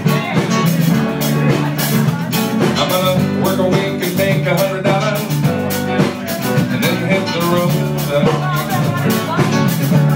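Live rock band playing an instrumental passage with guitar and drum kit, loud and steady throughout.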